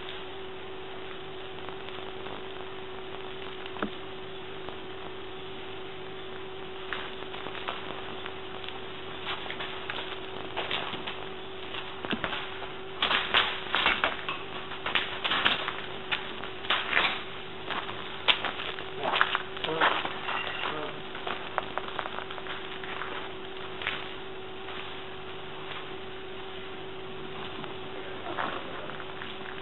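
Irregular crunches and clatters of footsteps over rubble and broken glass, thickest in the middle stretch, over a steady low hum and hiss.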